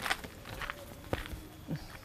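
A few faint, irregular footsteps.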